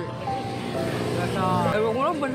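A man talking over steady background music.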